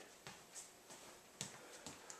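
Near silence in a small room, broken by a few faint soft knocks, the clearest about one and a half seconds in, as a person turns and shifts into a fighting stance.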